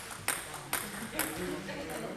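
Table tennis ball clicking sharply off table and bat three times, about half a second apart, in a large echoing hall with voices murmuring.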